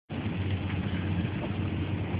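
Steady drone of a vehicle's engine and road noise heard from inside the cab, with a low hum and a constant hiss.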